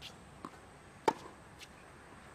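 Tennis rally on a hard court: a single sharp racket-on-ball hit about a second in, with lighter scuffs of sneakers on the court around it.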